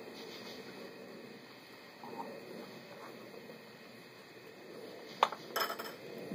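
Faint steady background hiss, then near the end one sharp clink followed by a brief rattle of clinks as a drinking glass is handled and set down on a hard surface.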